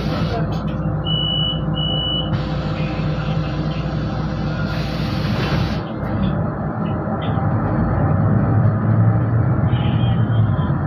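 Inside a Solaris Urbino 12 city bus under way: the diesel engine and drivetrain running steadily under road noise, the engine note growing louder near the end. Two short high beeps come about a second in, and a hiss runs for about three seconds in the middle.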